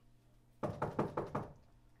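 Knuckles rapping quickly on a closed interior door: a fast series of about five or six knocks, starting about half a second in and lasting about a second.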